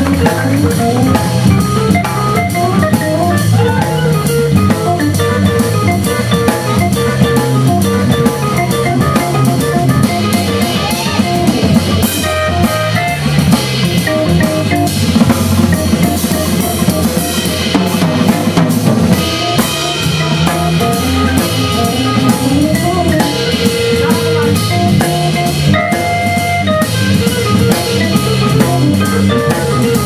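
A live jazz-blues band playing. A drum kit with cymbals keeps time under a stepping bass line from a Hammond XK-1 organ, and organ and horn lines play above.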